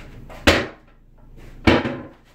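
Two sharp knocks a little over a second apart, like hard objects being set down or bumped against furniture.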